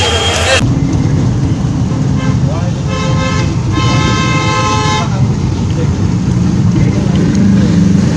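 Steady low engine and road rumble heard from inside a moving vehicle, with a vehicle horn honking from about two seconds in: a faint short toot, a short blast, then a longer held blast that stops about five seconds in.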